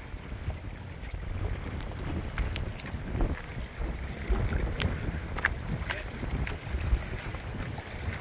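Wind buffeting the microphone as a fluctuating low rumble, with a few faint sharp clicks scattered through it.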